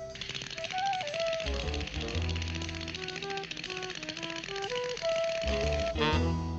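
Cartoon sound effect of teeth chattering with cold, a fast continuous rattle, over background cartoon music with a melody line and bass notes.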